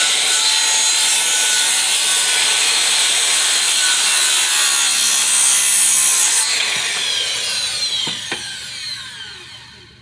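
Corded circular saw cutting an angle across a wooden deck board, running steadily under load. About six and a half seconds in the cut ends and the blade winds down with a falling whine, with a single knock near the end.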